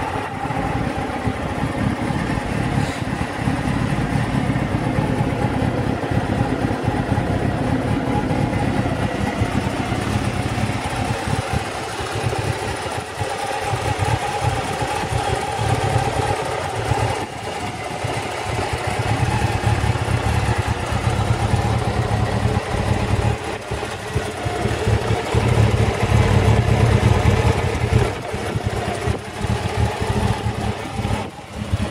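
Honda Hornet 600's inline-four engine idling steadily on the stand, getting somewhat louder in the second half.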